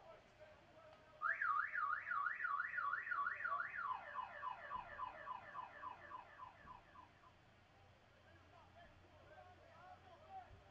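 An electronic alarm-like tone warbling up and down about three times a second. It starts suddenly about a second in, then shifts to a lower, quicker warble that fades out a few seconds later.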